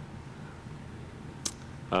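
A pause in a man's speech: steady room tone with a low hum, broken by one short, sharp click about one and a half seconds in, just before his voice starts again.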